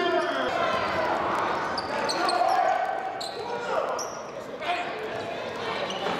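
Live basketball game sound in a large gym: the ball being dribbled on the hardwood court, short high sneaker squeaks, and indistinct shouts from players and spectators echoing in the hall.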